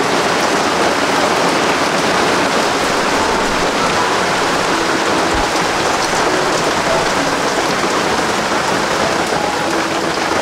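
Steady rain falling on a surface, a loud, even hiss with no breaks.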